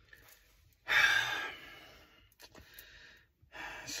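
A man's long sigh: a breathy exhale about a second in that fades away over a second or so, followed by a few faint clicks.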